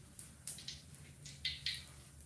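Cooking oil heating in an aluminium wok over a gas burner, crackling with irregular small pops, about three a second.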